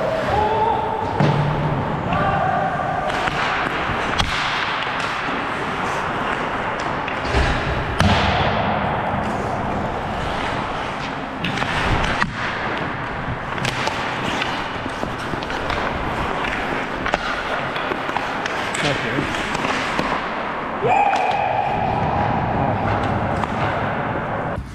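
Ice hockey play heard up close from a skating player: skate blades scraping and hissing on the ice, with scattered knocks and thuds of sticks and puck and players' shouts.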